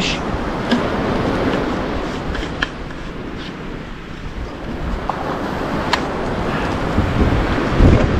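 Surf on a sandy beach mixed with wind on the microphone: a steady rushing noise that dips a little in the middle. A few faint clicks, then a heavy handling bump near the end as the camera is picked up.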